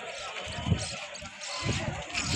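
Indistinct voices of people close by, with a low thud about a second in and a few more near the end.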